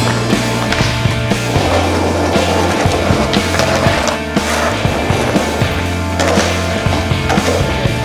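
Rock music with a steady bass line and drums, with a skateboard's wheels rolling on asphalt and the board clacking under it.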